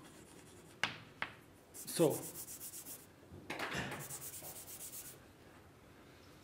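Chalk writing on a blackboard: two runs of quick scratchy strokes, after two sharp taps about a second in.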